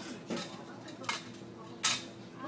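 Cutlery clinking against dishes: three sharp clinks about a second apart, the last one the loudest, over faint background voices.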